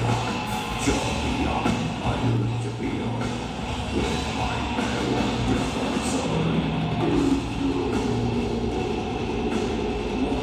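Death metal band playing live, with distorted electric guitars and a drum kit filling the sound steadily and densely, as recorded from the audience.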